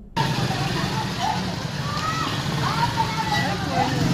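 Street sound from a handheld phone recording: motorcycle engines running close by, with people's voices calling out over the traffic noise.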